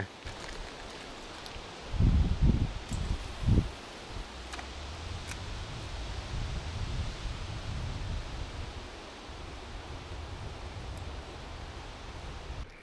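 Wind rumbling on the microphone outdoors, with a few louder low gusts or bumps between about two and three and a half seconds in, then a steady low rumble with a few faint ticks.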